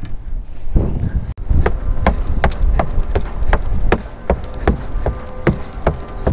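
Footsteps on wooden dock boards and wooden steps: a steady run of hollow knocks, about two to three a second, over a low rumble.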